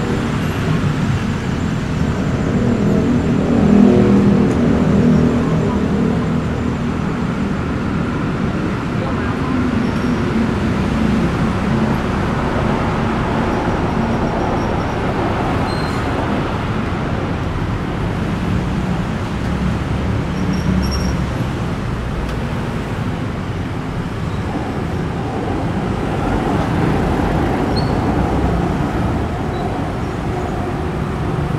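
Continuous traffic noise of cars, taxis and buses on a busy multi-lane city road, a steady engine-and-tyre rumble that swells briefly around four seconds in.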